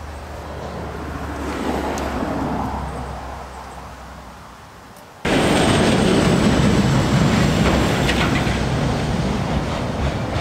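Road traffic noise: a passing vehicle swells and fades over the first few seconds. The sound then cuts suddenly to a louder, steady rumble and hiss.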